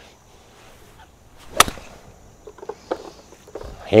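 A golf iron striking a ball off a hitting mat: one sharp crack about a second and a half in, followed by a few faint ticks.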